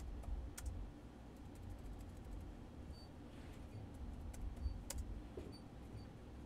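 Faint keystrokes on a computer keyboard as a file name is typed: scattered sharp clicks, with louder ones about half a second in and near five seconds, over a low hum.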